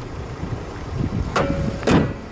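Toyota ist NCP60's small four-cylinder petrol engine idling with a steady low rumble, and two short sharp noises about half a second apart near the end.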